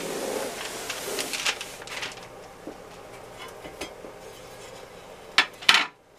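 A wooden candle-drying rack, hung with hooks and clothespins, handled and shifted across a paper-covered worktable. About two seconds of rustling and rubbing come first, then a few small ticks, and two sharp knocks near the end.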